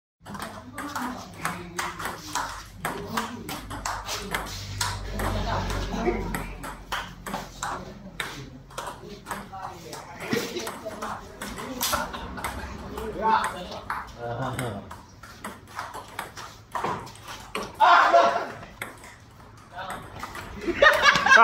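Table tennis ball in a doubles rally, a long run of sharp clicks as it is struck by the paddles and bounces on the table, with voices in the background.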